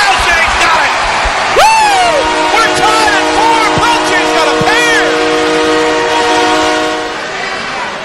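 Arena goal horn sounding after a home goal: it starts about a second and a half in with a sweep up in pitch, then holds a chord of several steady notes for about five seconds before stopping. A cheering crowd is heard under it.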